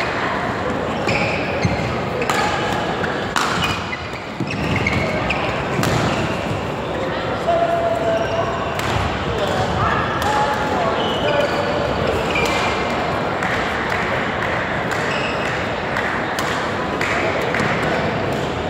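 Sports hall with several badminton games going: sharp racket hits on shuttlecocks at irregular intervals over steady background chatter.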